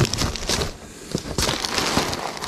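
Loose paper letters and notes rustling as hands shuffle through them in a box, with a quieter moment about halfway through.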